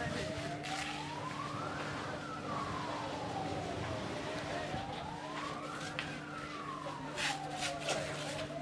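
Emergency vehicle siren in a slow wail, rising and falling about once every four seconds, over a steady low hum. A few sharp clicks near the end.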